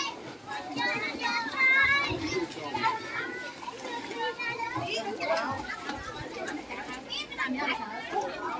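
Children playing and calling out to each other, several high-pitched voices overlapping.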